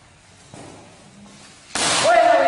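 Quiet room noise, then a single sudden loud burst of noise near the end, a short sharp bang or crack.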